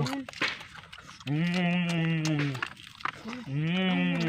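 A boy's voice making two long drawn-out calls, each held more than a second and falling slightly in pitch, the second starting about three and a half seconds in.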